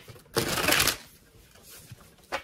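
A deck of tarot cards being shuffled by hand: one dense riffle lasting about half a second, a short while in, with lighter card clicks around it.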